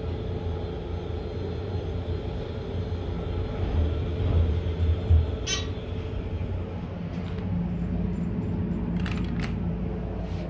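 Elevator car running down one floor: a steady low rumble and hum from the car in motion. A sharp click comes about halfway through, and two more clicks come near the end.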